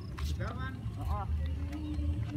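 Wind buffeting the microphone in an uneven low rumble, under indistinct voices, with a faint steady hum in the second half.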